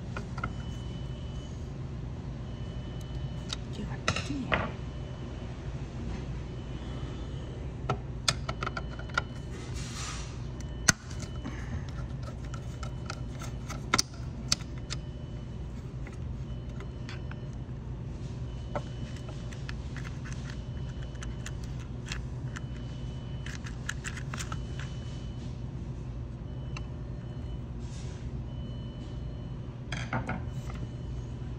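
Small metallic clicks, clinks and light rattles of tools, screws and wires being handled while a fryer contactor is wired in, with a few sharper knocks. Under them runs a steady low hum and a faint high beep repeating on and off.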